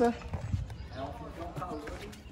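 Soft knocks and thuds of a large off-road tyre being handled and set against a pickup's front wheel, under faint voices.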